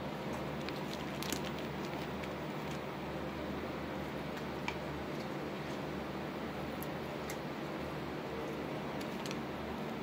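Steady low background hum in a small room, with a few faint, brief clicks.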